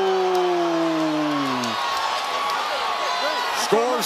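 A ringside commentator's long, drawn-out "oh" that slides down in pitch and fades out under two seconds in, over the steady noise of an arena crowd.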